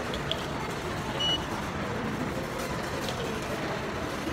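Parking ticket pay machine giving one short, high electronic beep about a second in, as its buttons are pressed, over steady background noise.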